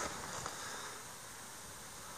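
Fingers rummaging through loose soil and grass roots in a dug hole: faint rustling with a couple of small clicks near the start, over a steady hiss.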